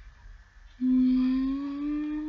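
A person humming one long note that starts about a second in and slowly rises in pitch.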